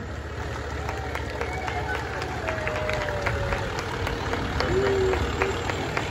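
Fire engine's diesel engine running at low speed as the truck rolls past close by, a steady low rumble that swells slightly as it passes.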